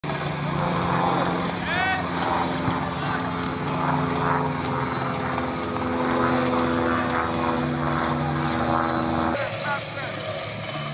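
A steady mechanical drone with several fixed pitches, with voices in the background and a brief chirp about two seconds in; the drone cuts off suddenly near the end.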